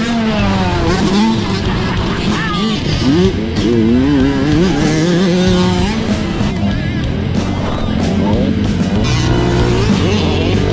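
Dirt bikes on a motocross track revving up and down, their pitch rising and falling repeatedly, over heavy wind rush on the handlebar camera's microphone.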